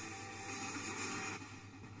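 Faint, steady background noise with no distinct events, dropping lower about one and a half seconds in.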